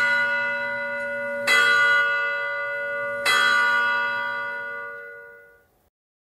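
A bell struck three times, about a second and a half apart, each strike ringing on with several steady tones that die away slowly and fade out near the end.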